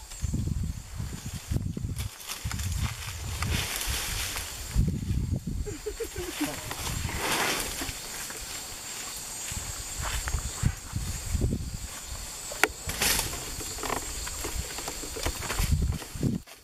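Asian elephants browsing and walking through forest undergrowth: leaves rustling, scattered cracks of twigs, and irregular low thuds. Brief quiet voices come in now and then.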